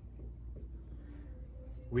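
Dry-erase marker drawing a short stroke on a whiteboard, faint over a steady low room hum.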